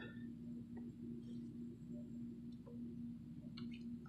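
Faint room tone: a steady low hum with a few faint small clicks scattered through it.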